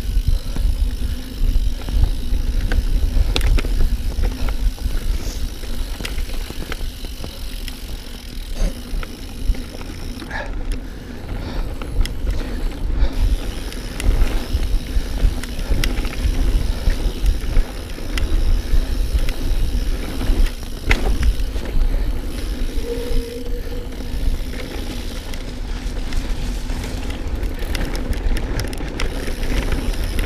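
Mountain bike being ridden along a dirt trail: wind rumbling on the microphone and tyres running on the dirt, with many sharp clicks and rattles from the bike over the bumps.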